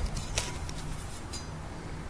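Faint handling noise from a steel garden spade and a plastic litter scooper being moved about, with two light ticks, about half a second and a second and a half in, over a low steady background.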